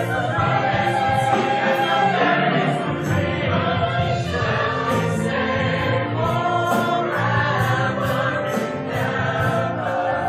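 Mixed-voice high school show choir singing with instrumental accompaniment, the voices held in full chords that shift every second or so.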